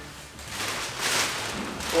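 Soft rustling of a plastic bag being handled, swelling about a second in and easing off.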